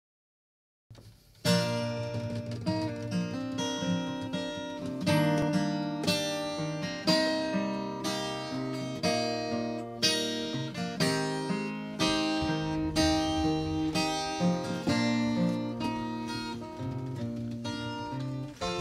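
Acoustic guitar playing chords, each struck sharply and left to ring, about one a second, starting about a second and a half in.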